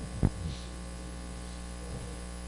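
Steady electrical mains hum on a handheld wireless microphone, with one sharp thump about a quarter of a second in and a softer one just after it, typical of the microphone being handled.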